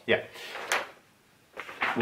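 A sheet of paper sliding and rustling as it is picked up, with a sharp click about three-quarters of a second in and more rustling near the end.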